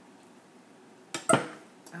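A soap cutter coming down through a loaf of soap and knocking against its base: a sharp click, then a loud clack with a brief ring, just past a second in.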